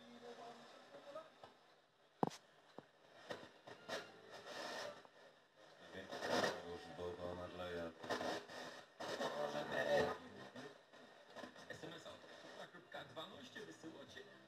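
Grundig 4017 Stereo tube radio playing broken fragments of broadcast speech in irregular bursts, with a sharp click about two seconds in.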